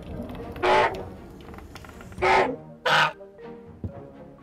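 Raptor screech sound effects: three loud, short screeches, the first under a second in and the last two close together about two and three seconds in, over background music.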